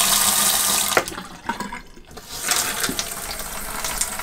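Water running from an RV bathroom faucet into a plastic sink basin, a steady hiss that drops away for a moment about halfway through and then picks up again.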